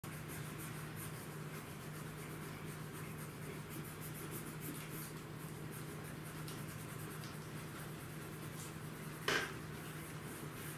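Conté crayon scratching and rubbing against the paper in soft strokes, over a steady low hum. About nine seconds in, a single sharp knock is the loudest sound.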